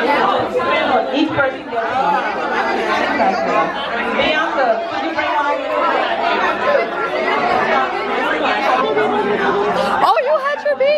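Crowd chatter: many guests talking over one another at once, a steady babble with no single voice standing out, in a large room.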